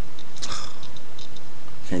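A single short sniff through the nose about half a second in, during a pause in talking; a voice starts speaking again right at the end.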